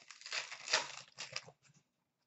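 Crinkling and tearing of a plastic hockey card pack wrapper handled by hand, in quick crackly bursts that are loudest a little under a second in and fade out toward the end.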